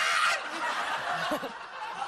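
Studio audience laughing, loudest at the start and dying away over the two seconds.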